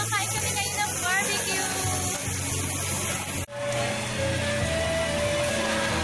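Background music with steady bass notes, cut off abruptly about halfway through and picking up again a moment later at an edit.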